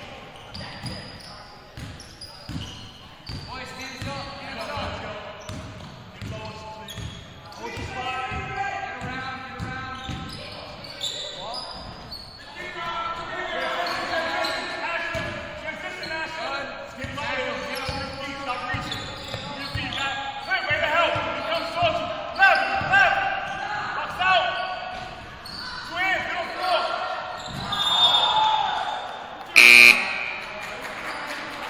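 Basketball bouncing on a hardwood gym floor, with players' and spectators' voices echoing in the gym. Near the end a loud, short referee's whistle blast stops play for a foul call.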